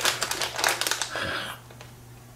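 Plastic instant-noodle package crinkling as it is handled: a quick run of small crackles that thins out and stops about a second and a half in, over a steady low hum.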